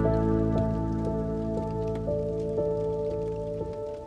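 Quiet melancholic piano music, a few notes held and slowly fading, over the steady patter of rain. The low notes die away near the end.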